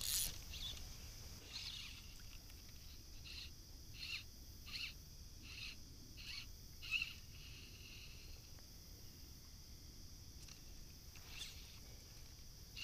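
A bird calling repeatedly, short faint calls coming about every three-quarters of a second, with a pause before they start again near the end.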